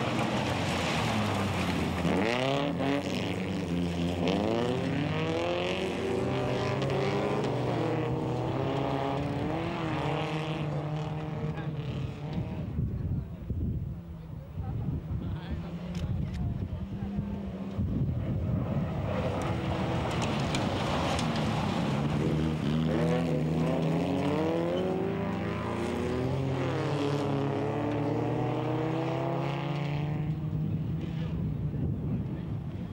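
Several folkrace cars' engines revving hard as the pack races around a dirt track, their pitches rising and falling with each rev. The sound drops quieter for a few seconds near the middle, then builds again as the cars come back by.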